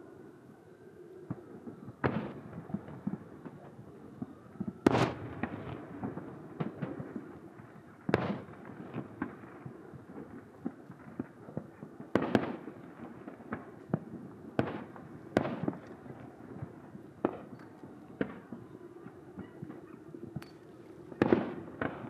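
Aerial fireworks shells bursting at irregular intervals, a few seconds apart, with smaller crackling pops in between; the sharpest bursts come about five, eight, twelve and twenty-one seconds in.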